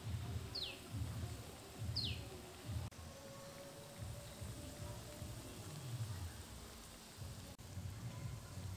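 Faint bubbling of turmeric broth boiling in an aluminium kadai, with soft low thumps as balls of raw prawn paste are dropped in. Two short high chirps falling in pitch come about half a second and two seconds in.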